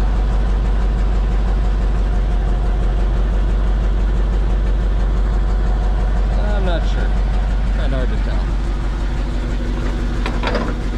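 Tow truck engine idling steadily, a low even hum with a regular beat. A few brief squeaky chirps sound between about six and a half and eight and a half seconds in.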